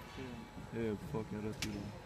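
Indistinct voices of people talking, with one sharp click about a second and a half in.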